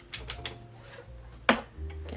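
A few light clicks, then a single sharp knock about one and a half seconds in: a hard object set down on a wooden desk. Faint steady background music runs underneath.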